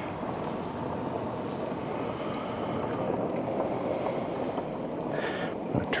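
Steady rushing background noise with no distinct events, its hiss growing stronger for a second or so in the middle.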